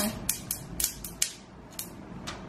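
Protective plastic film being peeled off a new phone: a run of short, sharp crackles and rips, about six in two seconds.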